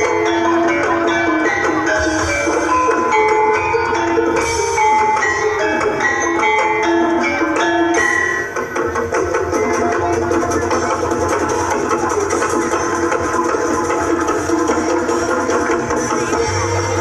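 Live ensemble music with pitched struck percussion playing a fast run of short, clear notes over drums. A brief dip comes a little past halfway, after which the sound is denser and more continuous.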